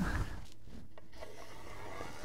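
Felt-tip marker rubbing along the surface of a cardboard tube as a line is drawn against a steel square: a soft, continuous scratching.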